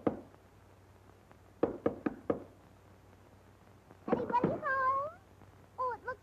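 Knuckles knocking on a wooden cabin door, three or four quick raps, then after a pause a drawn-out wavering creak as the door swings open.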